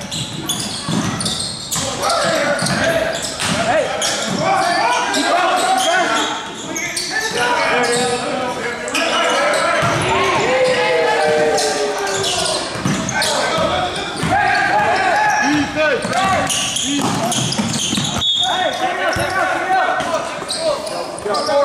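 Basketball game sound in a gymnasium: the ball bouncing on the hardwood court amid many short impacts, with players' voices calling out, all echoing in the large hall.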